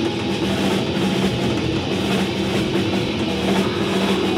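Punk band playing live and loud: electric guitar and drum kit together in a steady, dense wall of sound.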